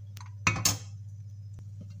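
A glass lid set down on a frying pan and a metal spatula laid on top of it: two sharp clinks about half a second in, over a steady low hum.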